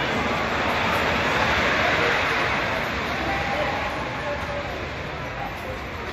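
A wooden roller coaster train rolling along its track nearby: a rushing roar that swells to its loudest about two seconds in and then slowly fades.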